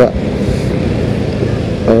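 Motorcycle riding at a steady pace: the engine's hum mixed with a steady rush of wind and road noise on the onboard microphone.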